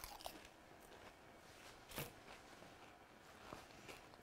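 Quiet chewing of a mouthful of crumbly puff pastry, with a soft crunch as the bite goes in and another about two seconds in.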